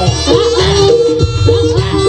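East Javanese jaranan (kuda lumping) ensemble music. A reedy, shawm-like wind instrument carries a stepping melody over a steady drum beat.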